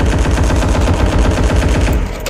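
Machine-gun fire sound effect: one continuous rapid burst of shots that cuts off at the end.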